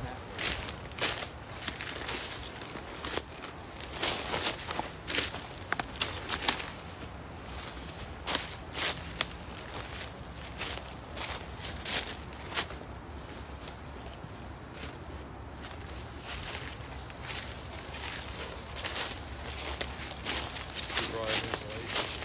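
Footsteps crunching through dry fallen leaves on a forest floor, in irregular sharp steps.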